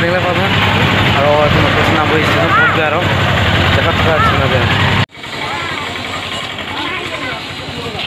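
A man talking over the steady idling of an auto-rickshaw engine. About five seconds in, the sound cuts off suddenly to quieter open-air background with faint voices.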